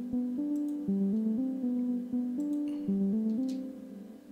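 Plucked synth arpeggio melody from the Spire software synthesizer, playing solo: short, guitar-like notes stepping up and down in a repeating phrase that comes round about every two and a half seconds, fading out just before the end.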